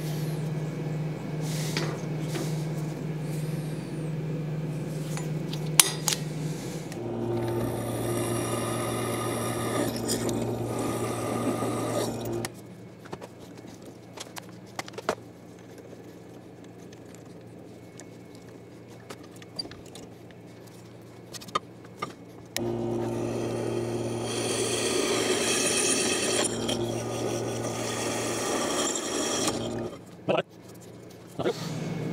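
Bench drill press running and drilling into steel square stock in two spells of several seconds, each a steady motor hum with a high cutting hiss. Between them is a quieter stretch with scattered small clicks and knocks.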